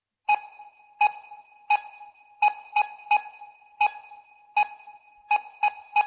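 Sharp electronic pings, all of the same pitch, about eleven of them: most come roughly every three-quarters of a second, with a few closer together.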